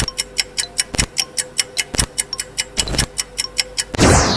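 Countdown-timer sound effect: fast, even ticking, about six ticks a second, with a heavier thump on each second over a steady low tone. It marks the answer time running out.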